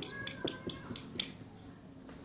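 Whiteboard marker squeaking as letters are written: a quick run of short high squeaks, one per stroke, that stops about a second and a half in.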